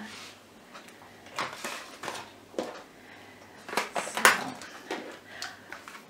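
A few light knocks and rustles of small objects being handled on a hard surface, over a low steady hum.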